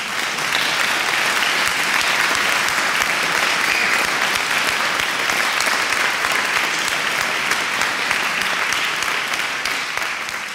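An audience applauding, a dense and steady clapping.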